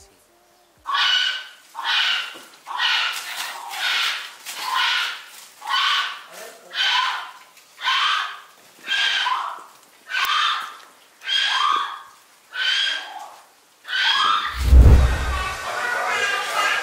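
An animal calling over and over, about fourteen calls at roughly one a second, each call about half a second long; near the end a loud low thump.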